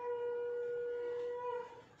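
A conch shell (shankh) is blown in one long, steady horn-like note. The note wavers slightly upward near its end and then fades out.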